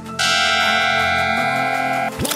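Background music, with a loud, steady bell-like tone made of several pitches setting in just after the start and holding without fading.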